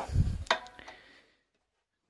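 A low thump, then a sharp knock about half a second in, as a star-shaped Edwards electric guitar is set into the holder of a Gravity VARI-G 3 guitar stand, with a short ring after the knock.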